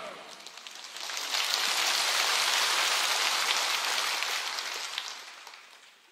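A large congregation applauding. It swells about a second in, holds steady, then dies away near the end.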